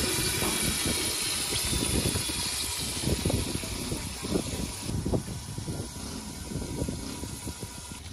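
A pot of vegetables in water boiling hard, a dense bubbling hiss with irregular low pops; the higher hiss falls away about five seconds in.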